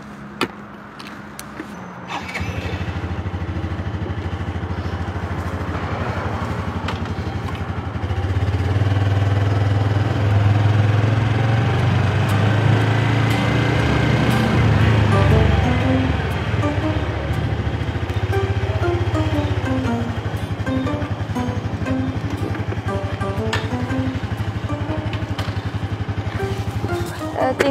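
A Yamaha Finn underbone motorcycle's small engine starts about two seconds in and runs steadily, louder for a while in the middle as it pulls away. Background music with a gentle melody plays over it in the second half.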